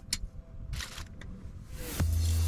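Small zinc-plated bolts and washers being handled: a few light clicks and a short rustle, over a low steady hum.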